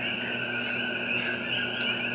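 A pause in the conversation: room tone with a steady, faint high-pitched drone in the background.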